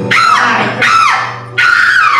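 A break in a live indie-punk band's song: three high squeals, each sliding steeply down in pitch over about half a second, one after another, over a steady low held note.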